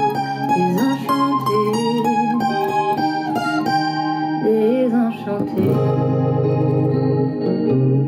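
Steel-string guitar with a capo, played as an instrumental: a run of plucked melody notes over chords, with a few bent, wavering notes about halfway. Then a fuller strummed chord holds low and steady.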